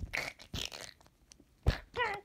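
Handling noise close to the microphone: a hand and small toy figures rustling and scraping on a fabric couch, with a few clicks and a sharp knock near the end.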